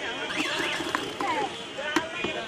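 Voices of people talking at a busy roadside food stall, over street noise, with one sharp click near the end.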